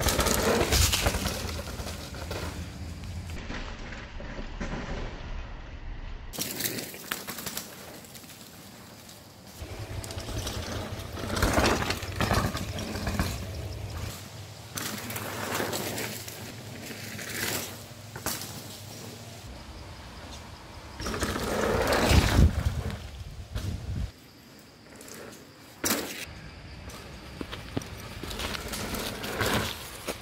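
A 29er mountain bike's tyres rolling over a dry dirt trail, swelling loud as the rider passes close by: about a second in, again around twelve seconds, and loudest around twenty-two seconds.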